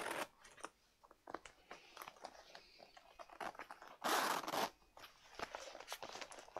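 Soft leather Chanel clutch being handled and folded: scattered small clicks and rustles of the leather and its zipper. A short rasping zip sounds about four seconds in.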